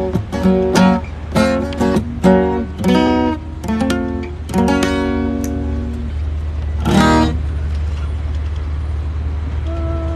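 Acoustic guitar strummed in chords for about six seconds, then one last short strum about seven seconds in, after which it stops. A low, steady rumble of street traffic runs underneath.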